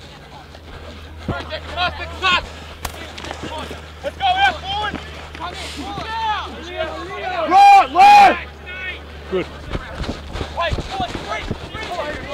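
Rugby players shouting and calling to each other during open play, in many short calls, the loudest two about seven and a half to eight seconds in. A steady low hum runs underneath.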